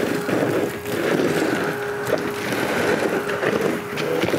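Milwaukee M18 FUEL 3-in-1 backpack vacuum (0885-20) running, its floor nozzle pushed across a rubber mat and sucking up stone dust and small debris: a steady rush of air with a faint motor whine.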